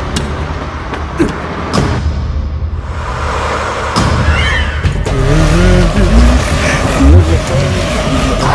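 Film action soundtrack: a vehicle engine running at speed under music, with a few quick swishing hits in the first half and wordless voice sounds in the second half.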